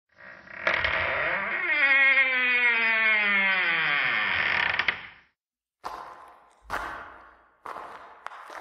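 A long, loud creaking groan that slides steadily down in pitch over a few seconds, then cuts off; after a short silence come three separate short knocks, each dying away quickly.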